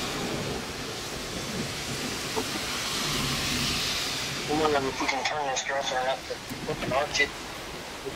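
Heavy rain, a steady rushing hiss, with faint voices over it in the second half.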